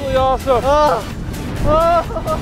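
Excited vocal whoops and an "oh" from a tandem skydiver under an open parachute, short rising-and-falling cries in the first second and again near the end, over steady wind rushing on the microphone.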